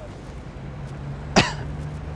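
A single sharp cough about a second and a half in, over a steady low drone of street traffic.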